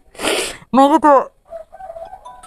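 A woman sobbing close to the microphone: a sharp gasping breath, then a short wavering cry that rises and falls, about a second in.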